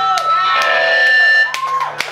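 Live band's electric guitar ringing out in sustained notes that bend in pitch as a song ends, with the crowd cheering.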